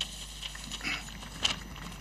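Scattered light clapping and faint crowd noise from a large seated outdoor audience, with a sharper clap about a second and a half in.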